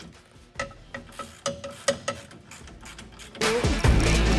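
Hand ratchet working a bolt on a car's rear suspension, giving a run of uneven metallic clicks and clinks, some ringing briefly. Loud guitar music comes in near the end.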